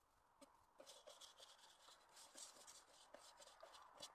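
Faint crunching and scraping of snow against a stainless steel pot as it is pushed through the snow to scoop it full, starting about a second in.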